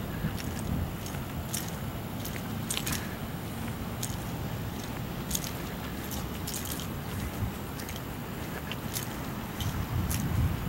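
Footsteps and handling noise as someone walks with the camera across pavement and grass: irregular light crunches and clicks over a steady outdoor hiss.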